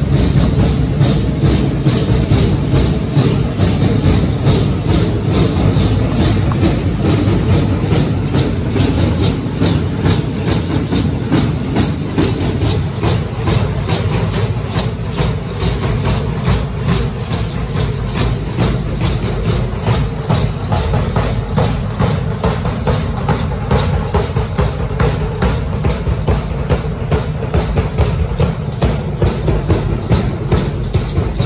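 Danza azteca drumming and rattling accompanying feather-headdressed dancers: a loud, fast, steady beat of about three strikes a second over a deep continuous drum rumble.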